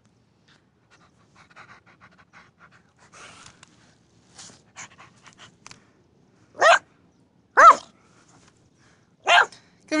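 Jack Russell Terrier puppy panting faintly, then giving three short, high-pitched barks: two about a second apart around seven seconds in, and one more near the end.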